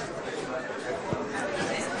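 Low murmur of several students talking among themselves in a lecture hall, with no single clear voice.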